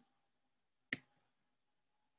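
Near silence, broken once by a single short, sharp click about a second in.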